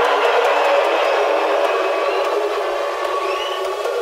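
Electronic dance music in a build-up with the low bass filtered out: held synth tones over a steady noisy wash, with a short rising sweep about three seconds in.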